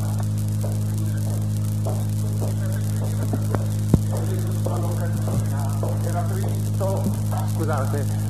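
Steady electrical mains hum on the recording, with faint indistinct voices beneath it and a single sharp click about four seconds in.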